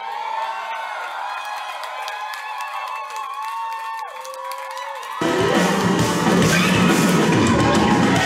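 Live rock band music with crowd noise. It starts thin, with no bass, and a held note slides down about four seconds in; a little after five seconds the full band sound comes in, much louder.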